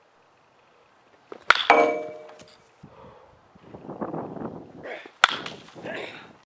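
Baseball bat striking a pitched ball twice during batting practice: a sharp crack about a second and a half in, followed by a brief ringing, and a second crack near the end.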